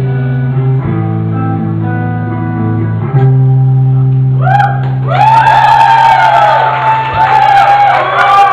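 Live rock band with electric guitar and bass holding sustained low chords that change a couple of times. From about halfway, high sliding tones that bend up and down come in over the chords.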